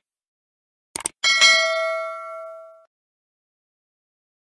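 Mouse-click sound effect, a quick double click, followed at once by a bright notification-bell ding of several tones that rings out and fades over about a second and a half.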